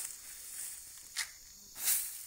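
SP36 granular fertiliser flung from a scoop onto leafy undergrowth, the granules landing in a short hissing spray near the end, with a smaller swish about a second in.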